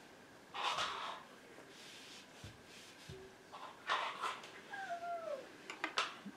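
A cat meowing: a short call about half a second in, another just before four seconds, then a longer meow falling in pitch.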